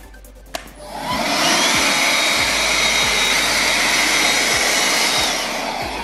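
Hoover ONEPWR cordless hand vacuum switched on with a click, its motor spinning up within a second and then running steadily with a thin high whine. The motor eases off near the end.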